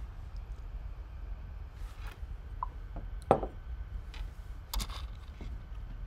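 Quiet room hum with a few faint clicks and rustles, and one sharper click a little past three seconds in.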